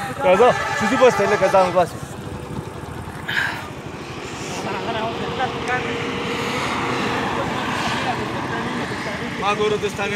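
A man's voice talking briefly, then the steady sound of a vehicle engine running in the background amid people's chatter, slowly growing louder over several seconds and easing near the end.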